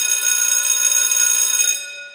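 A sustained buzzing, ringing tone with many high overtones, like an alarm or buzzer effect. It starts abruptly, holds steady and fades out near the end.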